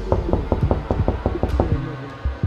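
A fast, even run of mechanical clicks, about eight a second, over a low steady hum, stopping shortly before the end.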